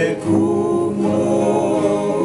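Several men singing a Tongan hymn in close harmony, holding long notes, with a new phrase beginning about a quarter second in. Acoustic guitars and a ukulele strum quietly underneath.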